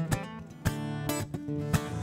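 Acoustic guitar strumming chords in a blues song played live, between the singer's lines.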